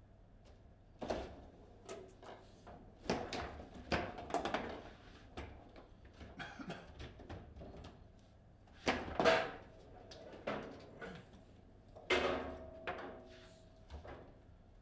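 Foosball table in play: plastic players striking the ball and rods knocking against the table's sides, heard as irregular sharp clacks and thuds. One of the shots scores a goal. The loudest knocks come about 9 s and 12 s in, and the one near the end rings briefly.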